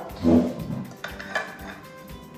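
A metal knife tapping and scraping against an upturned ceramic bowl on a plate as it is worked loose from a set china grass jelly pudding, with a few sharp clinks about a second in. A short, louder low sound comes just after the start.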